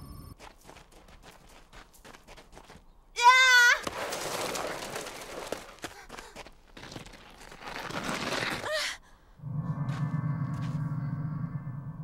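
Cartoon soundtrack effects: a short, loud warbling tone about three seconds in, then two stretches of rushing noise, and in the last couple of seconds a steady low hum.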